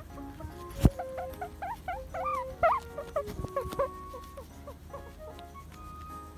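Guinea pig squeaking: a run of short rising squeaks lasting about three seconds, following a sharp click about a second in, over background music.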